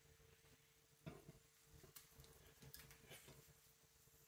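Near silence with a faint steady hum, broken by a few faint clicks and rustles about a second in and through the second half as a carabiner and climbing rope are handled.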